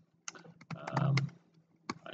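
Computer keyboard keys clicking in short quick runs as a username and password are typed, with one sharper keystroke near the end.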